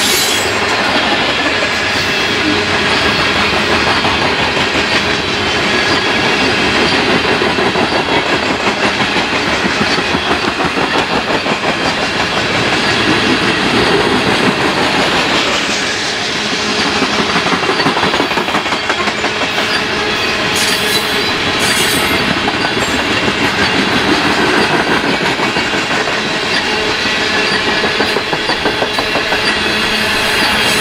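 A freight train of hopper cars rolling past close by: steel wheels on rail making a steady, loud running noise laced with a rapid clickety-clack.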